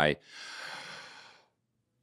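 A man's audible sigh, a breathy rush of air lasting about a second, then dead silence.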